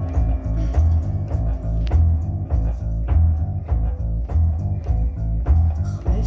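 Live band playing an instrumental passage: an electric bass line is loudest, over a steady drum beat of about one and a half hits a second, with keyboard chords underneath.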